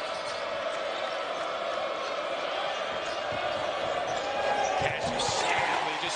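Arena crowd noise at a college basketball game, with a basketball being dribbled on the court. The crowd swells about four to five seconds in.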